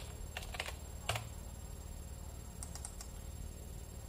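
A few quick keystrokes on a computer keyboard, typing a short search word, with the loudest tap just after a second in. A few fainter clicks follow later on.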